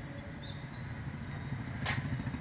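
Low, steady background rumble with a faint hum, the noise of the venue picked up through the speaker's microphone, with a short sharp noise near the end.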